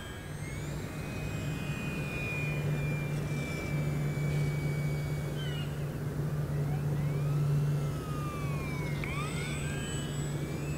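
Small electric RC plane, an E-flite UMX Turbo Timber Evolution, flying on a 2S pack: its motor and propeller whine in flight, the pitch gliding down and up with throttle and passes, and sweeping down then back up near the end as it flies by. A steady low hum runs underneath.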